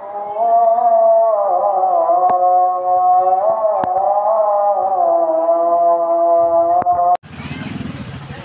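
A sustained melody, held long notes gliding slowly up and down in pitch, cut off abruptly about seven seconds in by outdoor noise with motorcycles.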